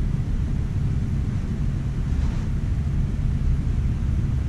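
Steady low rumble with no distinct events, a constant background noise on the recording.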